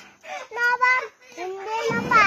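A small boy's voice calling out in two short, high-pitched spells, pleading for his chicken.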